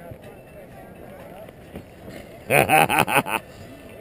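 People talking: faint voices for the first couple of seconds, then a short, loud burst of speech of a few syllables about two and a half seconds in.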